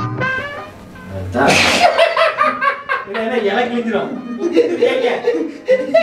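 A man laughing heartily amid chatter, with background music fading out at the start.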